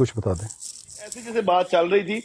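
Men talking over a live online voice call. One voice breaks off about half a second in, leaving a short pause with faint noise. Another voice, thin and cut off in the highs like phone-line audio, starts about a second and a half in.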